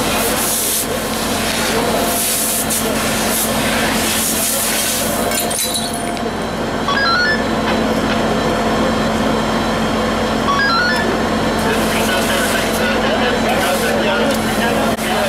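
Voices talking over a fire hose spraying into a burning house, its hiss coming in bursts for about the first five seconds, after which the voices dominate; a steady low hum runs underneath.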